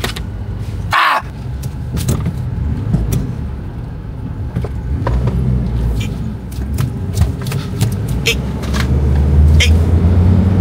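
Suzuki Escudo SUV being driven, heard from inside the cabin: a steady low engine and road rumble that grows louder near the end, with scattered light clicks and a brief sharp noise about a second in.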